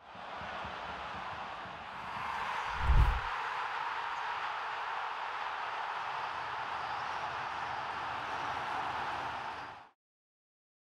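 Steady noise of a large stadium crowd, with a single deep thump about three seconds in; it cuts off just before the end.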